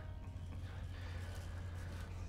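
Steady low hum of an elevator car during a ride, with little else above it.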